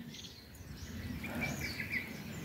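Faint outdoor ambience with a few short, distant bird chirps, mostly in the second half.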